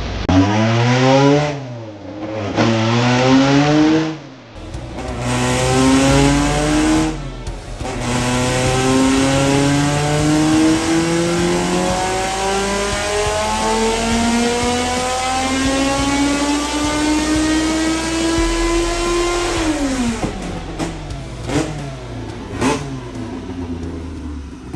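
Turbocharged drag race car engine on a chassis dynamometer: a few short revs, then a long pull that rises steadily in pitch for about twelve seconds before the throttle closes and the revs fall. A few sharp pops follow as it drops back.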